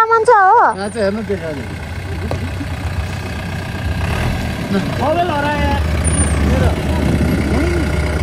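A Mahindra Bolero pickup's engine pulling up a snowy incline, its low rumble growing steadily louder as it approaches, with people calling out over it.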